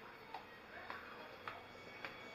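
Faint footsteps on a hard tiled floor, a short click roughly every half second at a walking pace, over quiet indoor background hiss.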